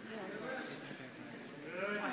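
Shouting from the sidelines of a wrestling match: drawn-out, wavering calls of voices too distant to make out words.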